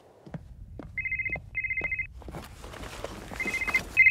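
Mobile phone ringing with a fast, trilling electronic ring. It gives two short bursts about a second in, and the next pair begins near the end.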